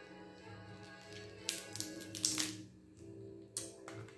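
Crab shell cracking as a piece of snow crab is broken apart by hand and at the mouth. There is a cluster of sharp cracks about one and a half to two and a half seconds in and two more near the end, over soft background music.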